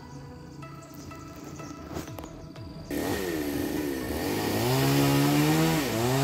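A small petrol engine starts up loud about halfway through, its pitch dipping and rising before holding steady, the running of a chainsaw, brush cutter or motorbike. Before it there are only faint steady tones.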